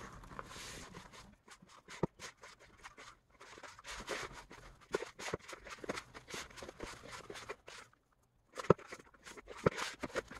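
A hand squeezing and mixing salt dough (flour, salt and water) in a plastic bowl: soft, irregular squishing and crumbly scraping as the mixture comes together, with a few sharper clicks.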